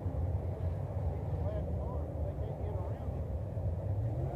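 Dirt late model race car engines running at low speed, a steady low rumble, as the field circles slowly under a caution.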